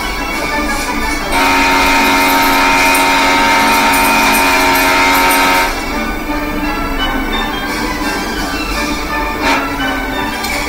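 Soundtrack of a dog video compilation playing from a TV: background music, with a loud, steady, held chord of several tones from about a second and a half in until nearly six seconds.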